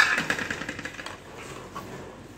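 Steel kitchenware clattering: a sudden loud clank, then a fast rattle that dies away within about a second.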